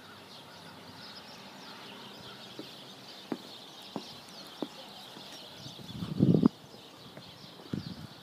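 Outdoor ambience with faint birds chirping, and a few footsteps as single sharp steps a little over half a second apart. About six seconds in there is a brief, louder muffled sound.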